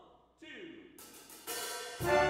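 Big-band jazz ensemble starting a tune: drum-kit cymbal and hi-hat come in about a second in, and the band's sound grows fuller and louder half a second later.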